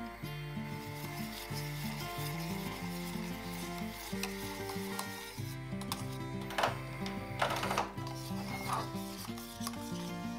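Wire whisk stirring and scraping thick chocolate sauce in a stainless steel saucepan, with a few louder scrapes in the second half, over background music.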